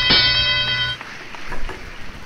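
A bright, bell-like chime is struck and rings with several high tones, then cuts off suddenly about a second in. It is a segment-transition sound effect marking the start of a new round.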